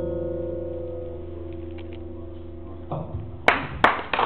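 Acoustic guitar's final chord ringing and slowly fading, damped about three seconds in; a few sharp hand claps start just before the end.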